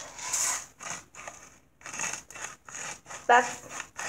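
Salt being added to the mix: a run of short, gritty rasps at irregular intervals, several in a row.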